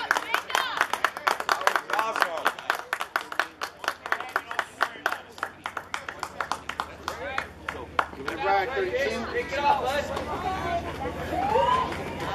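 Spectators applauding with many quick, dense claps for about eight seconds, over voices chattering; the clapping then fades and talk continues.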